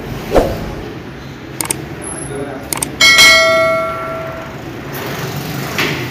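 Metal weight-training gear clanging: a few light metallic clicks, then about three seconds in a sharp clang that rings on for about a second and a half, typical of a Smith machine bar and iron plates knocking together during a set.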